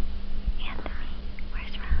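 Soft whispering: two short whispered phrases, about half a second in and again near the end, over a steady low hum and low rumble.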